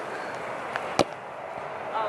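A football kicked once on grass, a single sharp thud about a second in.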